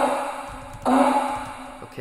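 A short sung vocal note, one solid pitch, played back twice through a bright-room reverb with a long decay time. Each hit starts sharply and fades into a long reverb tail.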